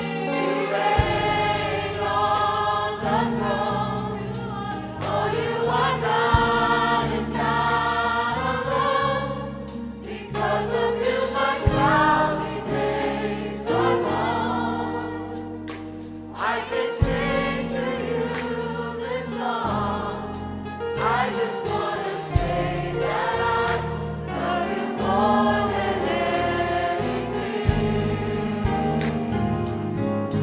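Gospel choir singing with a live church band: bass, drums, keyboard, electric guitar and saxophones.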